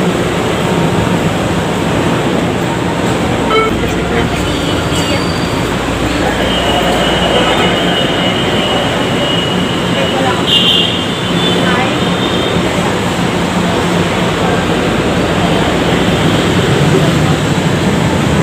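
LRT-1 light-rail train running through an elevated station, heard from on board: steady running noise with a low hum, and a thin high squeal from the wheels for a few seconds in the middle.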